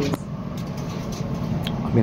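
Steady rumble of an Elizabeth line Class 345 train running, heard from inside the carriage.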